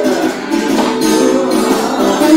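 Steel-string acoustic guitar playing an instrumental blues lead, single notes with a few that glide in pitch like string bends.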